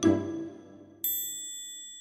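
The last note of the background music dies away. About a second in, a bright chime sound effect dings once and rings on, fading slowly.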